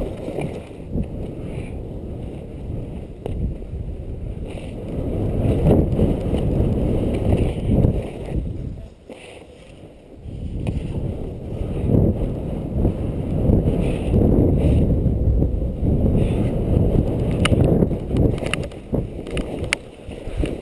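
Skis scraping and carving on snow, mixed with wind buffeting the camera's microphone, in rough surges with the turns of a fast downhill run. About halfway through it drops for a couple of seconds, and a few sharp clicks come near the end.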